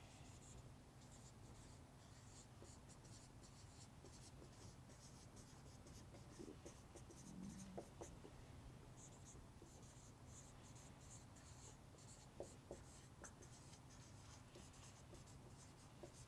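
Dry-erase marker writing on a whiteboard: faint squeaky strokes in short runs, with a few soft taps, over a low steady hum.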